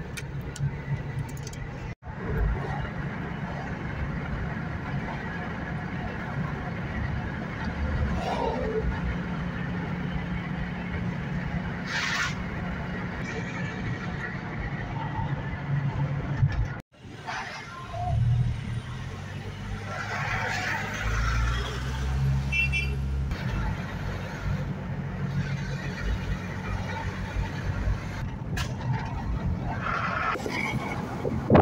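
Car interior noise on the move: a steady low rumble of engine and tyres heard from inside the cabin. It drops out abruptly twice, about two seconds in and a little past halfway.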